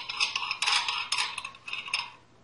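Lug nuts being spun by hand onto the wheel studs of a brake drum: a quick, irregular metallic clicking and ticking.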